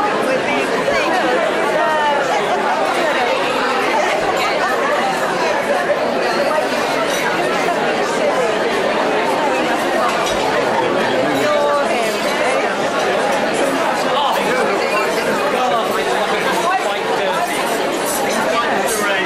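Many people talking at once around dinner tables in a large room: a steady hubbub of overlapping conversation, with no single voice standing out.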